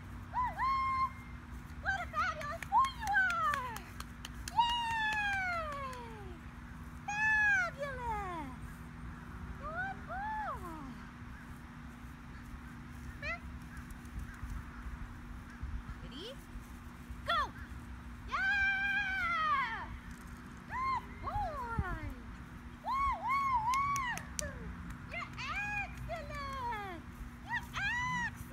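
A small dog whining and squealing in short, repeated high-pitched cries that rise and fall in pitch, coming in clusters with short pauses: the excited whining of a dog held waiting to run. A steady low hum runs underneath.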